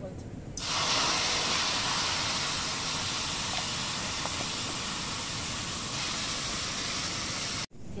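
Wet potato strips dropped into hot oil in a blackened iron wok, sizzling loudly. The sizzle starts suddenly about half a second in, holds steady, and cuts off abruptly near the end.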